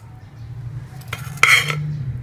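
Metal kitchen tongs clinking against cookware as a syrup-soaked slice of fried bread is lifted out of the pot and set down: a light clink about a second in, then a louder clatter just after.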